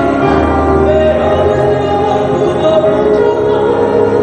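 Music: a choir singing with held notes over sustained accompaniment, steady throughout.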